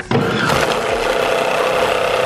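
Countertop blender starting up about a tenth of a second in and running steadily at speed, its blade churning a jar full of Orbeez water beads and a Wubble ball. The load pushes hard against the lid, which is held down by hand.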